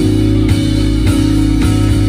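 Live band playing: electric guitar and drum kit over a deep bass line, with a drum hit about every half second.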